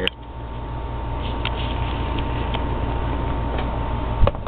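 Steady low background hum with a faint thin high whine, and a few light ticks scattered through it.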